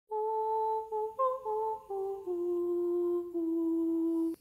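A voice humming a short tune of steady, held notes that steps mostly downward, the last two notes held longest before it stops.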